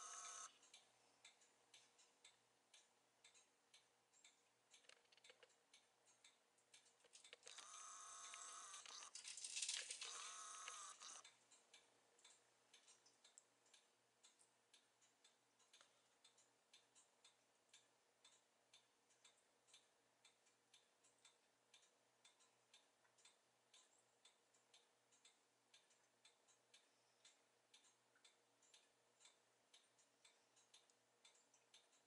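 Near silence with faint, regular ticking, about two to three ticks a second, and a louder sound lasting about four seconds a quarter of the way in.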